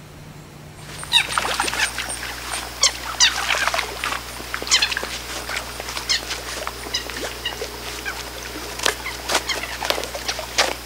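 Green frogs calling: many short, sharp calls at irregular intervals, some overlapping, starting about a second in.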